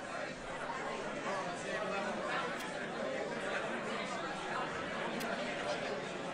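Crowd chatter: many people talking at once in steady overlapping conversation, with no single voice standing out.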